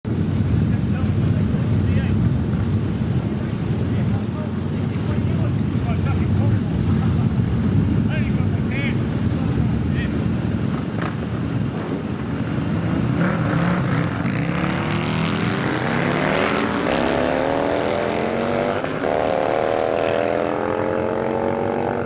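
Modified cruiser motorcycle engines idling with a deep, uneven rumble at the start line. About two-thirds of the way in they rev up and climb steadily in pitch as the bikes launch and accelerate hard down the drag strip. A gear change drops the pitch briefly near the end before it climbs again.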